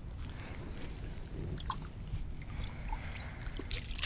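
Shallow pond water sloshing as a small object is dipped and swished by hand at the bank, with a brighter splash near the end, over a steady low rumble.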